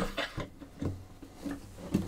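A cello being handled: a few soft knocks and rubs as its long end pin is slid back in and the instrument is brought upright.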